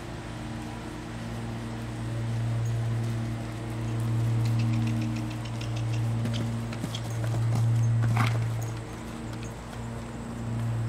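A horse's hoofbeats on turf as the mare canters down a jump chute, faint under a steady low hum that swells and fades several times.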